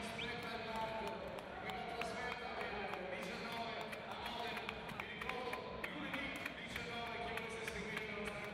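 Volleyball arena sound during a rally: a constant hubbub of crowd voices and shouts, with many short sharp slaps of the ball being struck and hitting the floor.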